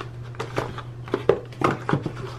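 Small paperboard carton of a cleansing bar being opened and handled by hand as the bar is taken out: a string of short taps and clicks from the cardboard.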